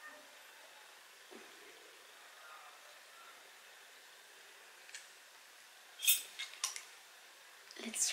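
Metal cutlery clinking: a fork and knife are picked up off a plate, giving three or four sharp clicks close together about six seconds in, after several seconds of near quiet.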